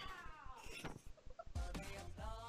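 The drawn-out effort yell of a person working a gym chest-press machine ("Hawwww-Arrrgh-YEAH!"), falling in pitch and ending in a short shout. About one and a half seconds in, music with a heavy bass starts abruptly.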